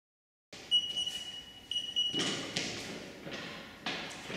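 After half a second of silence, two long electronic beeps of an interval timer, then repeated thuds of feet landing from Bulgarian split squat jumps on a gym floor.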